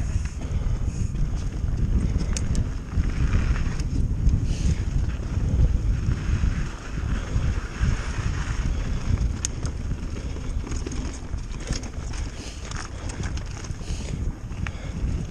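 Wind buffeting a handlebar-mounted action camera's microphone as a Pivot Firebird mountain bike rolls fast down a dirt and rocky trail, with tyre noise on the ground and scattered sharp clicks and rattles from the bike over rocks.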